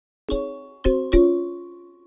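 Three bell-like chime notes, struck about half a second apart and then in quick succession, each ringing on and fading away.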